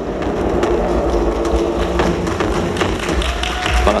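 Walk-on music over a hall sound system: sustained held chords over a steady low bass, with a few faint taps.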